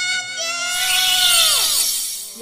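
Edited-in sparkle sound effect: a bright shimmering hiss builds under a held tone that slides down in pitch near the end.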